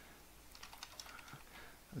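Faint computer keyboard typing: a quick run of soft keystroke clicks as a line of code is entered.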